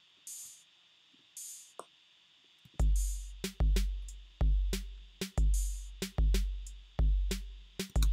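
Programmed hip-hop drum loop from Logic Pro X's Classic Hip Hop Remix Kit. Two short open hi-hat hits sound first, then about three seconds in the loop starts playing: long, deep kick drums with sharp closed hi-hat ticks between them and open hi-hat hits.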